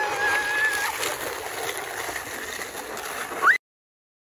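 A sled sliding fast down a hill, a steady scraping rush, with a person's high squeal rising and held for about a second at the start. A short rising squeal comes near the end, just before the sound cuts off suddenly.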